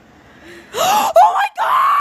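A person screaming in three high-pitched bursts, starting about three-quarters of a second in.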